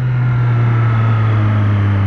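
Triumph Street Triple's three-cylinder engine running at steady part throttle while riding, its note drifting slowly lower, with wind noise over the microphone.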